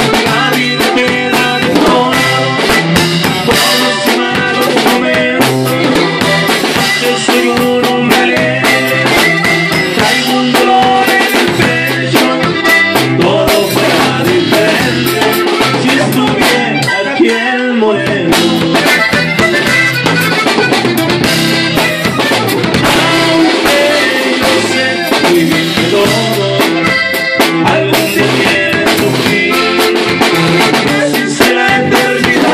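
Norteño band playing an instrumental passage: button accordion leading over a bajo sexto, electric bass and a drum kit keeping a steady beat.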